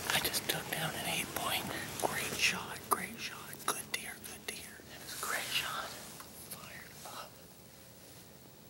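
A man whispering into the microphone at close range, which stops about seven seconds in.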